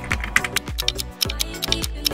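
Computer-keyboard typing sound effect, a quick run of key clicks as hint text is typed onto the screen, over background music with a steady beat.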